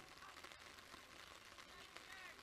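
Near silence: faint outdoor ambience from the football match footage, with a few faint distant calls.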